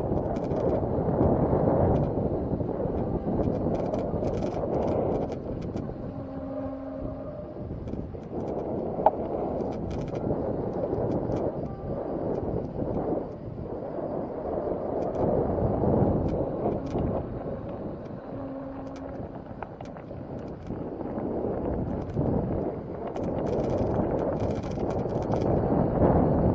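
Wind buffeting the moving camera's microphone in swelling and fading gusts, with scattered light clicks and rattles. Twice a short, steady low tone lasts about a second.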